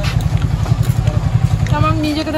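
Motorcycle engine idling close by: a steady, rapid low throb that drops away at the very end.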